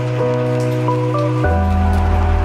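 Beef strips sizzling and crackling as they are stir-fried in a skillet and turned with a spatula, under background music with sustained bass notes that shift about one and a half seconds in.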